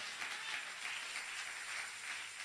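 Faint, steady applause from a church congregation, heard as an even wash of clapping in a large hall.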